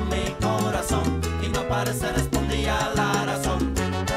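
Instrumental salsa music from a Cuban-style band, with a strong, moving bass line under a busy rhythmic texture.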